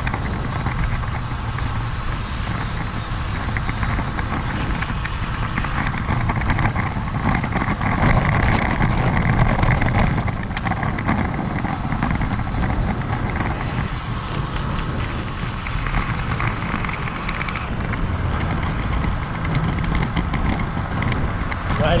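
Steady wind rumble on the microphone of a camera mounted on a moving road bike, mixed with tyre and road noise; it grows louder for a few seconds in the middle.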